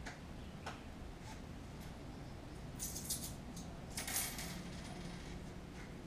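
Small clicks and clinks of objects being handled, with a couple of single clicks early and two short clattering clusters about three and four seconds in, over a faint low room hum.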